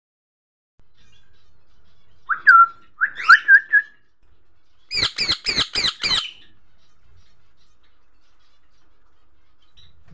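Indian ringneck parakeet calling: a few short whistled notes two to four seconds in, then a fast run of five sharp chirps about five seconds in.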